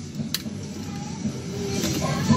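Claw machine's crane motor running as the claw travels and lowers over the plush toys, with one sharp click about a third of a second in.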